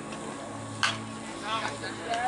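A single sharp knock of a pitched baseball at home plate a little under a second in, over a steady low hum and distant voices.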